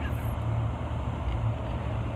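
A steady low hum under a faint hiss, with a brief high hiss just after the start.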